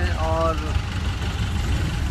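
Steady low engine rumble of a small vehicle, heard from inside as it moves, most likely an auto-rickshaw; a man's voice speaks briefly at the start.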